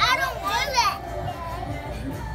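A young child's high-pitched voice: two short wordless vocal sounds, one after the other, in the first second, then quieter room noise.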